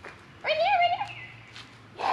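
A dog giving one high, drawn-out whine about half a second in, its pitch rising and wavering.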